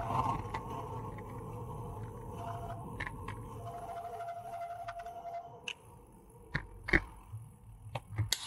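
A road bicycle coasting downhill on tarmac, heard muffled through the camera mount as a low steady rumble. A faint steady whine runs for a few seconds in the middle, and a few sharp knocks come near the end.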